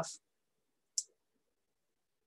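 A single short, sharp click about a second in.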